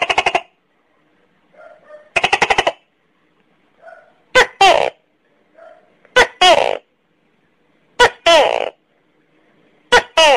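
Tokay gecko calling: two rapid rattling bursts, then three two-part "to-kek" calls about two seconds apart, each note falling in pitch, with another call starting at the very end.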